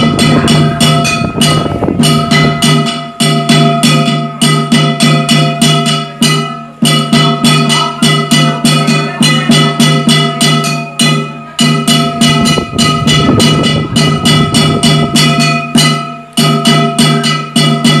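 Ritual percussion music accompanying a chicken dance: fast, even strikes about four a second over steady ringing tones, played in phrases of a few seconds with brief breaks between them.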